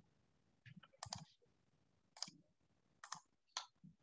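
Faint computer mouse clicks, a handful spread irregularly, with a quick cluster about a second in.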